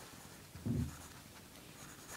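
Pencil lead scratching lightly on paper as a line is sketched, with one brief low sound a little before the middle.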